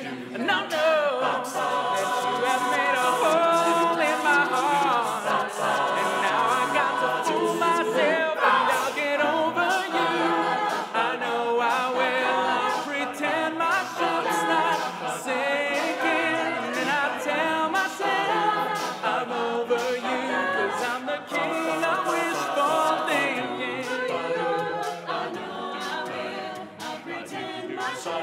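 Mixed-voice a cappella group singing wordless harmonies in a dance-pop arrangement, with a steady beat of sharp percussive clicks running under the chords.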